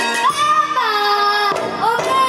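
A boy singing into a microphone, holding long notes that slide up and down in pitch.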